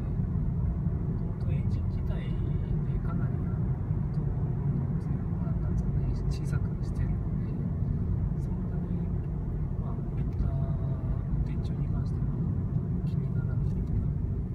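Steady low rumble inside the cabin of a Mazda Demio XD driving at town speed: its 1.5-litre four-cylinder turbodiesel mixed with tyre and road noise, with little diesel clatter: the occupants find its diesel sound well suppressed.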